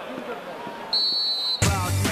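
A referee's whistle blown once, a steady high blast of about half a second, about a second in, over background voices from the match. Loud music with a heavy beat cuts in near the end.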